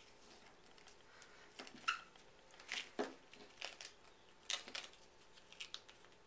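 A strip of duct tape being folded back and forth accordion style by hand: a scattering of short, quiet crinkles and rustles as the tape is creased.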